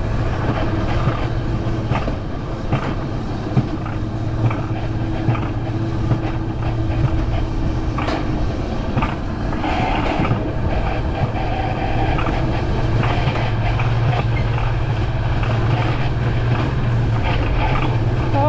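Alpine coaster sled running along its steel tube rails: a steady low rolling rumble from the wheels on the track, with scattered clicks and rattles.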